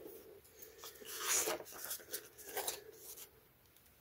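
Faint rustling of a paper sticker being peeled from its sheet and pressed onto a planner page: a longer rustle about a second in and a shorter one later.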